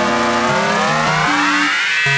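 Electronic dance music: a synth line dips in pitch and then glides steadily upward through the second half like a riser, over a stepping bass line.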